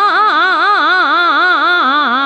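Hindustani classical vocalist singing a fast taan in Raag Bhairav, the voice swinging up and down through the notes about five times a second without a break. A steady drone tuned to C# sounds underneath.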